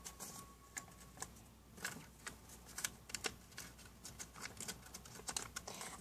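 A small paper envelope being handled and pressed in the fingers: faint, irregular paper crackles and clicks.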